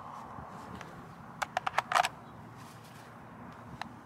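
Steel .223 AK magazine clicking against the Zastava M90's magazine well as it is worked into place: a quick run of five sharp clicks a little before halfway, then one small click near the end. The tight magazine is not yet latching.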